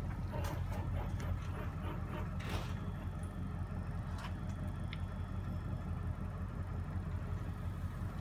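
Steady low electrical hum of a CNC-converted milling machine standing powered up, with a couple of faint ticks.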